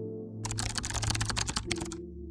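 Computer keyboard typing sound effect: a quick run of keystrokes starting about half a second in and lasting about a second and a half, over a soft sustained ambient music pad.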